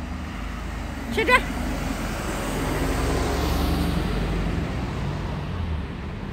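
A road vehicle passing on the street, its low engine and tyre noise swelling to a peak about three to four seconds in and then fading away.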